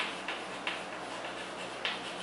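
Chalk writing on a chalkboard: a few sharp, irregular taps and short scratches as letters are written, four clear ticks in two seconds.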